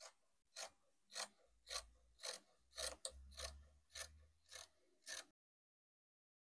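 Fabric scissors snipping through woven cloth in an even run of about ten cuts, roughly two a second, stopping abruptly about five seconds in.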